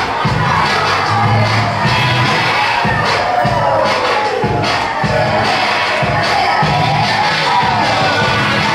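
Dance music with a steady beat playing loudly, overlaid by an audience cheering and children shouting.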